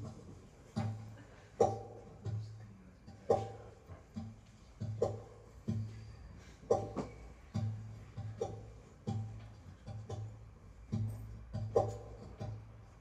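Guitar intro picked in a steady rhythm, a low bass note and a chord struck together a little under a second apart.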